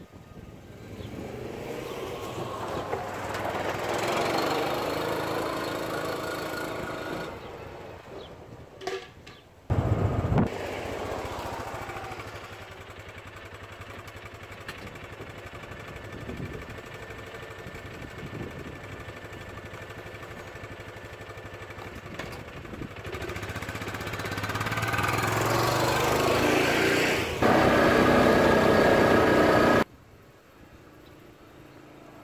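Kawasaki Mule 610 utility vehicle's small single-cylinder engine running as it drives, its pitch rising and falling, with several abrupt jumps in level.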